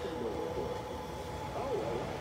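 Faint city-street background: a steady low hum with distant voices.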